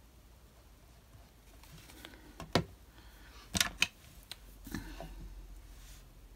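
Small craft tools being handled on a desk: a few sharp clicks and taps, two of them close together, then a brief rustle, as a glue bottle is set down and a fine pen taken up.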